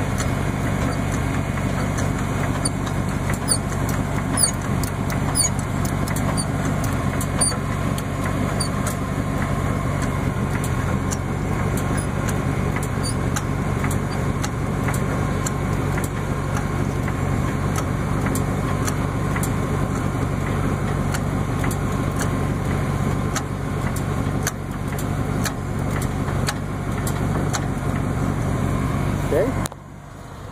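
A car engine idling steadily, with faint light clicks and creaks from a hydraulic floor jack being pumped by its handle to tilt a trailer deck.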